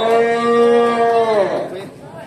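A man's voice holding one long drawn-out shout for about a second and a half, its pitch steady and then dropping as it trails off: a volleyball commentator's stretched-out call at the end of a rally.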